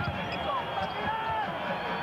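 A basketball dribbled on a hardwood court: repeated bounces over arena crowd noise, with a few short sneaker squeaks.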